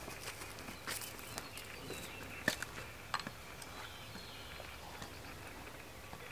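Footsteps of a man walking over the ground: a few scattered, faint crunches and clicks over a quiet outdoor background.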